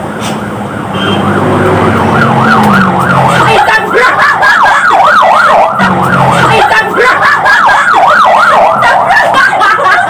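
An emergency-vehicle siren on a fast yelp, its pitch sweeping up and down about four or five times a second, coming in about two seconds in and carrying on to the end.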